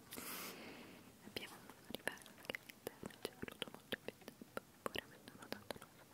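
Close-miked whispering full of small sharp mouth clicks, several a second, opening with a short rustle.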